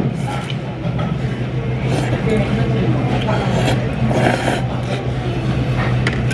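Indistinct voices in a busy ramen shop over a steady low hum.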